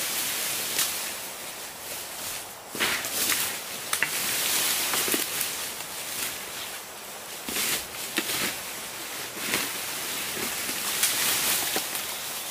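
Footsteps crunching and rustling through dry cut bamboo leaves and litter, with irregular snaps and knocks as a cut bamboo pole is handled and dragged through the debris.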